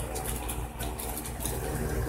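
A steady low hum with faint, light rustling over it.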